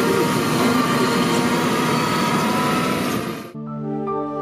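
Schiltrac transporter on crawler track units running over snow: a steady engine and drivetrain noise with a faint hum. About three and a half seconds in it cuts off abruptly and calm music begins.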